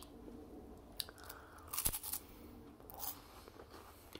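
Crisp strawberry creme wafer cookie being bitten and chewed: a few short crunches, the loudest about two seconds in.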